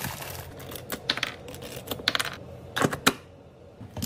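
Plastic snack pouches crinkling and clicking as they are handled and set into a wooden tray, with sharp crackles about one, two and three seconds in.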